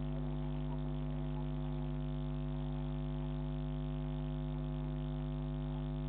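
Steady electrical mains hum with several even overtones, unchanging throughout, as picked up by a security camera's microphone.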